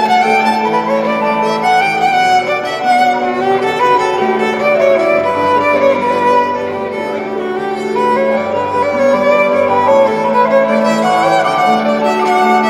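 Violins playing a melody over long held lower notes that change every second or two.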